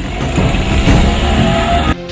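A car accelerating, its engine note rising steadily over a loud rush of engine and road noise. The sound cuts off suddenly near the end.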